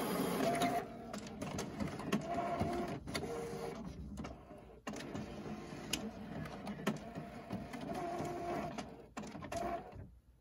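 A nine-year-old HP TouchSmart inkjet printer warming up and starting a print job. Short motor whines at a few different pitches come and go, mixed with repeated sharp clicks and knocks of its mechanism.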